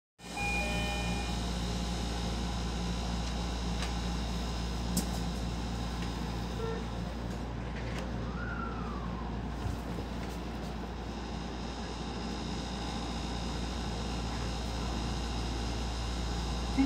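Steady running noise of an electric commuter train heard from inside the leading car, a constant low rumble with a faint hum as the train moves off slowly along the track.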